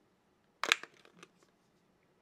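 Snap-on plastic back cover of an HTC myTouch 3G Slide being pried off: one sharp snap as its clips let go, followed by a few lighter clicks.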